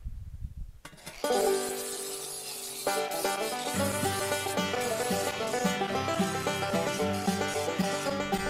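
Background music starting about a second in: an upbeat tune of plucked strings, with a steady bass line joining about halfway through.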